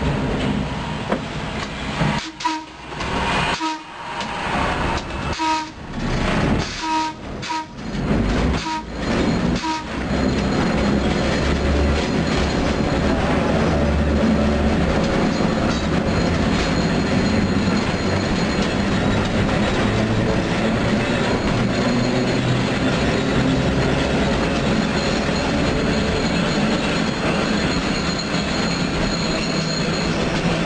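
Restored electric interurban car running along the track, heard from inside its front cab: a steady rumble of the car and its wheels on the rails. The sound rises and dips unevenly for the first ten seconds, then settles into a steady run.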